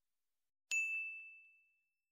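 A single notification-bell ding sound effect, struck about two-thirds of a second in and ringing away over about a second, the chime of a 'click the bell' subscribe prompt.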